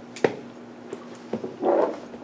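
Laptop keyboard and mouse clicks while code is being selected: one sharp click about a quarter second in and two fainter ones later, then a short muffled sound near the end, over a steady low room hum.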